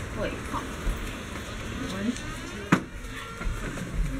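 Faint voices and movement, with one sharp knock about two and a half seconds in.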